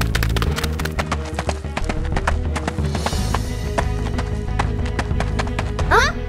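Cartoon background music under a dense run of quick, clattering clicks, thickest in the first two seconds. A short rising vocal sound comes right at the end.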